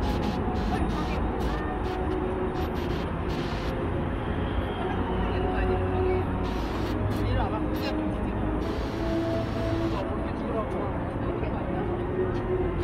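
City street ambience: a steady low rumble of car traffic going past, with music and indistinct voices over it.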